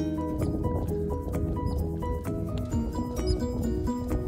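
Background music: a melody of short, stepping notes over a steady low bass, with light percussive clicks.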